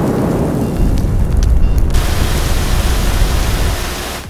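Logo-animation sound effect: a deep rumbling burst like a fiery blast, joined about two seconds in by a bright hissing spray, fading near the end.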